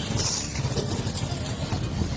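Motorcycle engines running, a steady low rumble with road and wind noise around it.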